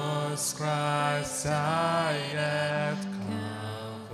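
Worship team and congregation singing a hymn together, with slow, held notes over a steady accompaniment.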